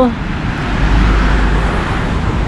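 Road traffic on a tree-lined avenue, car tyres and engines running past, with a low rumble that swells about a second in.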